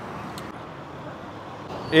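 Steady road traffic noise: an even hiss of passing vehicles on a city street.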